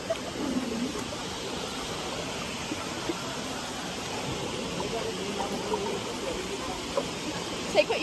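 Steady rushing of flowing river water, with faint voices in the background.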